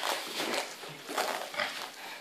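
Grapplers breathing hard and grunting with effort, about four noisy breaths in two seconds.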